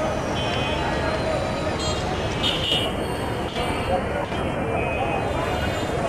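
Busy railway platform: many people's voices over the steady low rumble of diesel trains standing at the station, with a brief high-pitched toot about two and a half seconds in.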